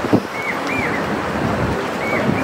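Steady rushing background noise with no clear source, picked up by an open microphone. Two faint short chirps come about half a second in.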